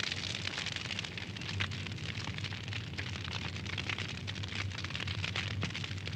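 Fire burning steadily, a continuous rush of noise dotted with many small crackles.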